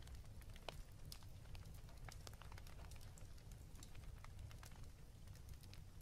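Near silence: faint room tone with a low steady hum and scattered faint clicks and crackles.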